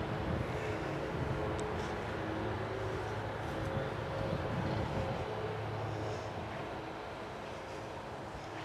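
Steady low drone of a distant engine, holding at a constant pitch and easing slightly near the end.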